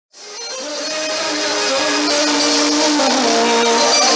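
Live Greek popular music played loud by a band on stage, fading in over the first second and then running with steady held notes that move in steps.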